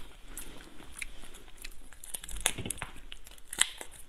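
Crab shell cracking and crackling as soy-marinated crab is pulled apart by hand: a run of irregular sharp snaps, the loudest about two and a half and three and a half seconds in.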